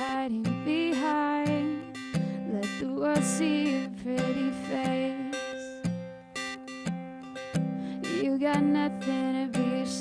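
A young woman singing with her own strummed cutaway acoustic guitar. The strumming and singing ease off briefly a little past the middle, then pick up again.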